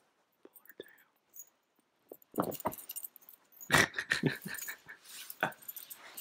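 A dog vocalizing in short bursts as her tail is pulled, starting about two seconds in, loudest around four seconds in, with another burst near the end. The metal tags on her collar jingle along with it.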